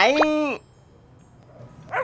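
A small dog's whine in an animated cartoon: one drawn-out call at the start, about half a second long, that falls off at the end.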